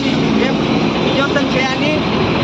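Busy street sound: steady traffic noise under people talking.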